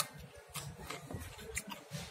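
Faint, irregular crunchy clicks of a mouth chewing a bite of raw bottle gourd, with one sharper click at the start.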